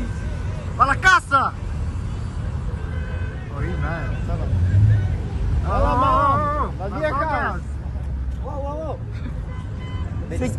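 Low, steady engine rumble of cars rolling slowly past. Voices shout over it, loudest about a second in and again around six to seven seconds.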